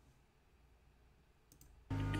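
Near silence, then a faint double computer-mouse click about one and a half seconds in that starts an online video playing; the video's soft background music comes in just before the end.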